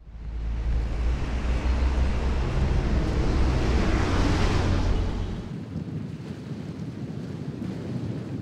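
Sea surf washing in with wind blowing across the microphone, swelling to a peak around the middle; the deep wind rumble eases off about five and a half seconds in.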